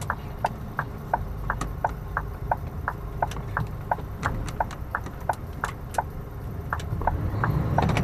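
Lorry cab's indicator/hazard flasher ticking steadily, about three ticks a second, over the low rumble of the Scania's diesel engine.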